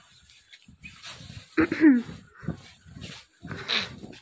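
A dog's short whining yelp that falls in pitch, a little under two seconds in, followed by a couple of shorter, fainter yelps. Faint rustling of cotton fabric being handled sits between them.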